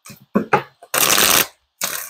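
A deck of cards being shuffled by hand: a couple of short flicks, then a longer run of shuffling about a second in, and more just before the end.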